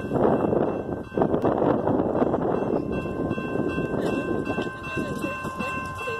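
A railroad crossing warning bell rings steadily as the crossing signals activate, growing stronger about halfway through. Wind buffets the microphone, heaviest in the first half.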